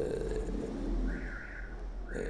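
A man's long held hesitation sound, a drawn-out 'ehh' with no words, over a steady low hum.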